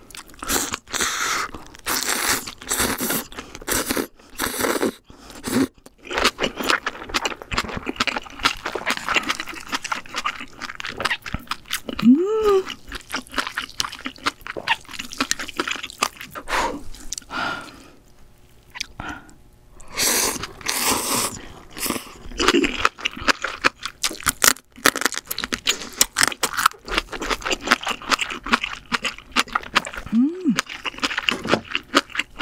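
Close-miked eating: ramen noodles slurped and chewed with wet, crunchy mouth sounds in quick succession, and long slurps near the start and about twenty seconds in. A short rising "mm" hum comes about twelve seconds in.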